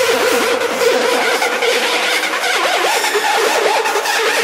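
Electronic music breakdown with no kick drum: a dense noisy synth wash over a steady held note, with synth lines that wobble rapidly up and down in pitch, thickest in the second half.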